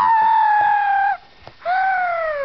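A child's voice screaming in character: two long high-pitched screams, the first held nearly steady for about a second, the second sliding down in pitch as it ends.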